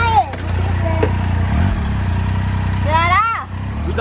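Triumph Tiger three-cylinder motorcycle engine idling steadily, with a brief blip in revs about one and a half seconds in.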